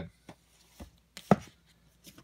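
Plastic DVD cases clacking against each other and a wooden shelf as one is slid back in and another pulled out: a few light clicks and one sharp knock about a second and a quarter in.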